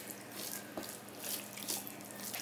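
Fingers mixing boiled rice with mutton curry on a steel plate: a run of short, wet squishing and crackling sounds.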